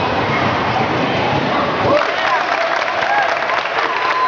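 Spectators in a gym talking over one another. About halfway through, scattered clapping and voices calling out begin.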